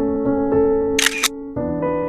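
Background keyboard music of sustained, held chords that change about one and a half seconds in. About a second in, a brief sharp sound effect cuts across the music.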